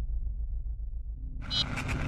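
Logo-sting sound design: a low rumble, then about one and a half seconds in a bright rushing whoosh sets in suddenly and swells louder.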